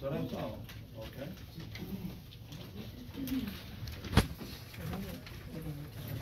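Soft, indistinct murmuring voices, with one sharp knock a little after four seconds in, the loudest sound.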